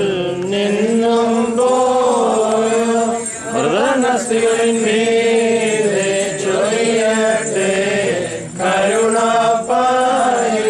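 Voices chanting an Orthodox liturgical hymn in unison: one slow melody of long held notes, with short breaks between phrases, about three and a half seconds in and again near the end.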